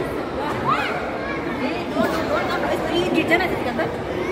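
Indistinct chatter of several overlapping voices, some high and rising, with no single clear speaker.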